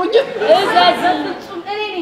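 Speech only: actors trading lines of stage dialogue.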